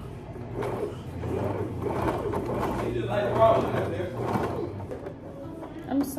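Small electric domestic sewing machine running steadily as it stitches through denim, stopping shortly before the end.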